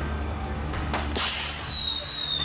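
A flare gun fires with a sharp pop about a second in. A long high whistle follows that slowly falls in pitch, over a low steady drone.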